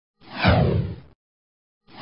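Whoosh sound effects for animated on-screen text: one falling swoosh lasting about a second, then an identical one starting near the end, with silence between.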